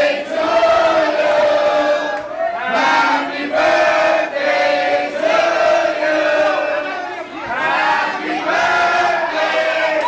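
A crowd of people singing together in loud unison, with long held notes one after another.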